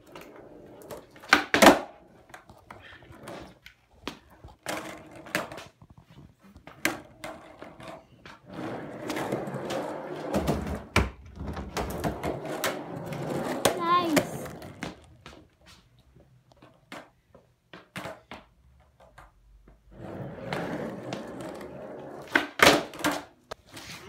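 Skateboard wheels rolling on rough concrete, broken by the clack of the board's tail popping and the wheels landing, over and over. The loudest clacks come about a second and a half in and near the end.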